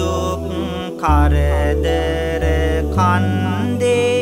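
A Buddhist monk sings Sinhala devotional blessing verses (seth kavi) in a drawn-out, ornamented melody over musical accompaniment. Held bass notes change a few times, and the voice breaks off briefly just before a second in.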